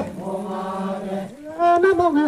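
A voice chanting a Donyi-Polo prayer in long held notes: a low note held steady for over a second, then a higher phrase rising in near the end.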